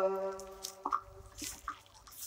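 The last sung note of a man's naat fading out through the PA system, followed by a few faint, short clicks and knocks of a handheld microphone being handled.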